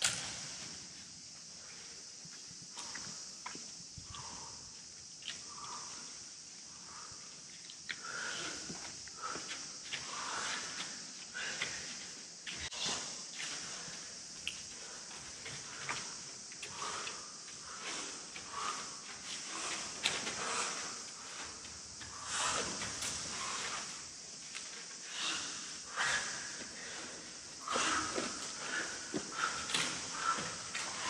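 A large bundle of dry dead branches rustling, scraping and crackling in irregular bursts as it is carried and shifted across a paper-covered floor, with footsteps, over a steady high hiss.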